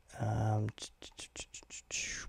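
A brief murmur from a man, then a quick run of about eight light clicks from computer keyboard keys, roughly six a second.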